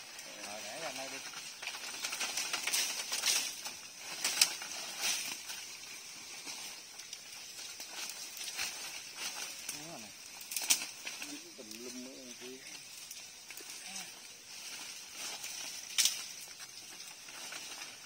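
Dry vines, leaves and old chain-link mesh rustling and crackling as they are torn by hand from a tree trunk, with a few sharp snaps along the way.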